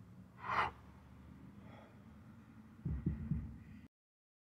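A man's sharp, forceful breath with the effort of a kettlebell press, a fainter breath about a second later, then a few low thuds near the end before the sound cuts off suddenly.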